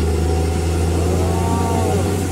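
Steady low drone of a vehicle's engine and road noise while driving at a constant speed. Near the end, a short tone rises and falls.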